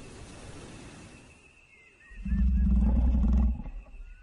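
A lion roaring once: a single deep, loud roar begins about two seconds in and lasts a little over a second.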